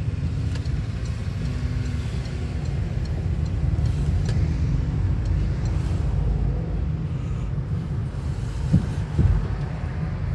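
Steady low rumble of a car driving in town, heard from inside the cabin: road and engine noise. Two short thumps near the end.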